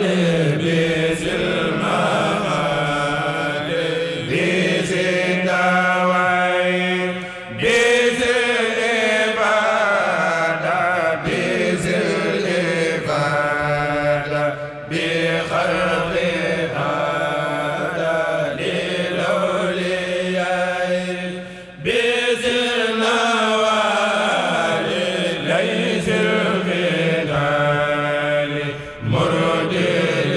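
A group of men chanting a khassida, the Mouride religious poem, together. The chant runs in long melodic lines, with a short break for breath about every seven seconds.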